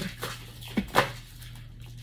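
Tarot cards being handled and shuffled in the hands, giving a few short card snaps and taps in the first second, over a faint steady low hum.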